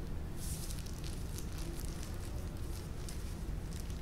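Faint, scattered scratching and crackling of a wooden chopstick digging a small hole in potting soil, over a low steady hum.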